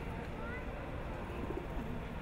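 Quiet outdoor background with a steady low rumble, a couple of short bird chirps about half a second in, and a low dove-like coo near the end.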